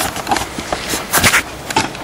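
Irregular clicks and rustles of handling noise close to the microphone as the rifle and laser are moved and aimed, loudest in a cluster a little past a second in.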